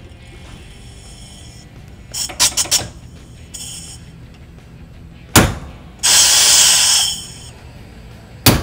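Hammer striking a pin punch on the hardened steel pressure relief valve plunger of a Harley-Davidson Twin Cam cam plate, one sharp crack about five seconds in, tapping the plunger to form a new seat in the aluminum plate. Shop air hisses faintly past the valve at first, a few light metal clinks come a couple of seconds in, and right after the strike compressed air rushes out loudly for about a second.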